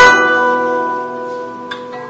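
Guzheng (Chinese zither) strings struck together in a full chord that rings on and slowly dies away, with a light single pluck near the end.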